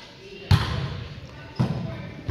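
A volleyball being struck twice in play, about a second apart, the first hit the louder, each echoing briefly in a gymnasium.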